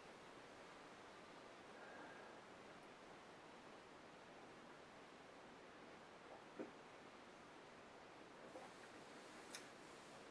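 Near silence: room tone, with one faint click about two-thirds of the way through.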